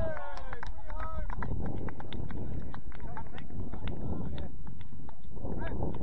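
Wind buffeting the microphone, with a few distant shouts from players in the first second and a steady run of sharp clicks throughout.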